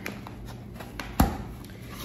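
A cardboard box of nail polish being handled and opened: a few light taps and scrapes, with one sharp knock just past a second in.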